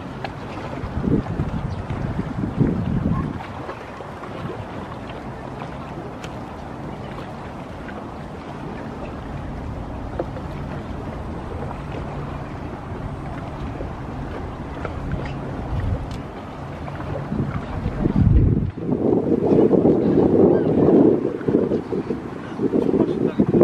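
Wind buffeting the microphone in gusts over a steady low engine hum, as from a boat on the river. A louder stretch of noise starts near the end.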